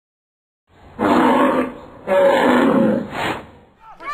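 Animal sound effect of a bull: two long, loud, breathy blasts, then a shorter third one near the end.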